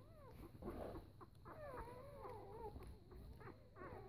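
Newborn four-day-old puppies squeaking and whimpering faintly while nursing: a string of thin, wavering cries, the longest lasting about a second in the middle.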